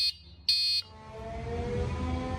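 The RMB EV E-Quad mobility scooter's electric horn beeps: two short, high, buzzy beeps about half a second apart. After them a low hum slowly builds.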